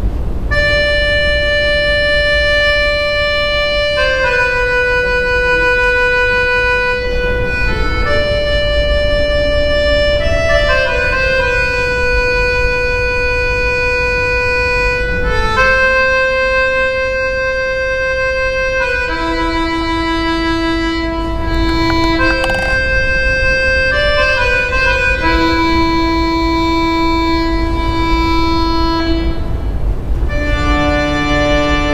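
A Pistelli piano accordion played solo: a slow melody of long held notes, each sustained for a second or several before stepping to the next. A lower second voice joins the melody twice in the second half.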